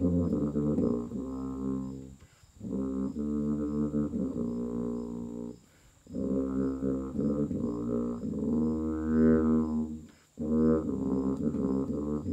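Tuba playing a slow melody in phrases, with short breaths about two, six and ten seconds in.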